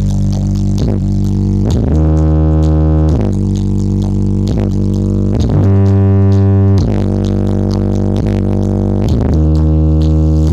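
Loud electronic music played through a stacked sound system with four subwoofers during a sound check: long, deep synth bass notes that change pitch every second or two, with short sliding drops between them.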